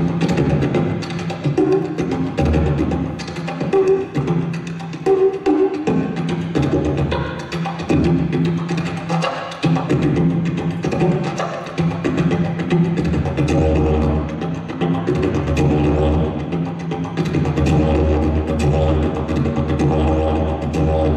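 Wooden didgeridoo played solo: a continuous low drone with rhythmic accents and shifting overtones.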